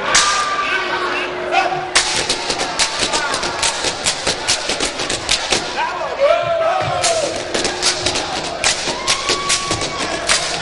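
A dance troupe's body percussion: quick runs of sharp stamps and slaps, several a second, broken by a pause about six seconds in, with the performers' voices calling out in short rising-and-falling shouts.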